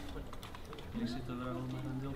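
Light clicks of metal spoons against small plastic cups as people eat, with faint voices in the background from about a second in.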